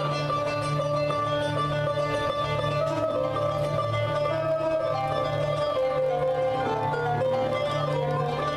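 Live Arabic music from a band with keyboards: a flowing melody over a steady low drone, played for a belly dance.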